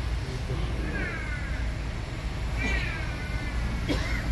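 An animal calling twice, each call short with a falling pitch, over a steady low hum.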